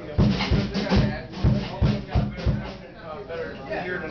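Drum kit struck about seven times in an uneven run of loud hits with deep thumps and cymbal wash, stopping about two and a half seconds in.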